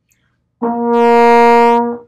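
Trombone playing a single held note at a steady pitch, starting about half a second in and lasting about a second and a half. It is played with the slide drawn in to shorten the tubing, giving a higher note.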